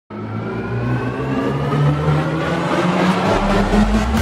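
Synthesized intro music for a news segment: a riser whose tones glide slowly upward over low sustained notes, with a noisy swell building toward the end.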